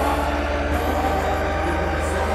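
Early-1990s progressive house music playing from vinyl: sustained synth pads over a steady bass note that shifts pitch under a second in.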